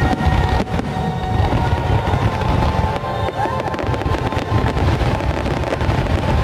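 Aerial fireworks bursting in quick succession, a dense run of booms and crackles, with the show's music playing underneath.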